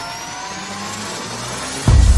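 Logo-sting sound design: a rising sweep, several tones gliding upward together, then a sudden deep hit just before the end.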